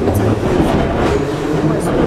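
Metro train running, heard from inside the carriage: a loud, steady rumble of wheels and running gear.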